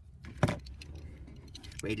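A red pocket multi-tool with scissors being handled and set down on a table: faint metallic clinks and one loud knock about half a second in.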